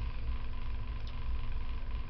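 A pause in speech filled by a steady low background rumble with a faint constant hum, and one faint click about a second in.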